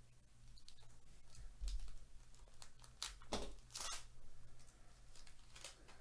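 A Topps Cosmic Chrome foil card pack being torn open by hand and its wrapper crinkled as the cards come out: a string of short, faint tearing rustles and clicks, loudest about halfway through.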